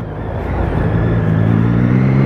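Motorcycle engine running at steady, moderate revs while riding through slow traffic, with road and wind noise.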